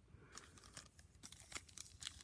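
Faint crinkling and light clicks as a trading-card pack wrapper and cards are handled.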